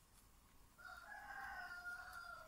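A faint, distant animal call that starts about a second in and holds one slightly falling pitch for over a second.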